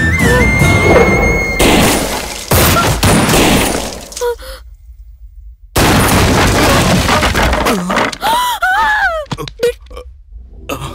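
Film soundtrack of dramatic background music with loud crashing impact effects about one and a half seconds in, cutting out abruptly to silence for about a second mid-way. The music and hits then return, with a wavering pitched cry near the end.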